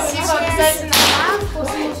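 Background music playing in a room, with a sudden sharp swish about a second in.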